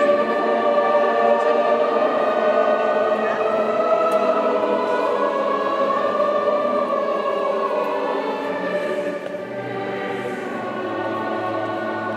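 A choir singing a slow hymn in long, held notes, the communion chant; it grows softer about nine seconds in.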